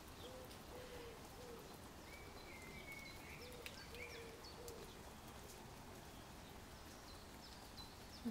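Faint bird calls over quiet room tone: a series of short low notes repeating every half second or so, and a higher drawn-out note about two seconds in.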